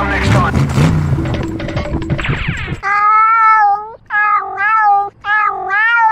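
A domestic cat meowing three times in a row, each meow drawn out for about a second with a wavering pitch, starting about three seconds in, after a stretch of music.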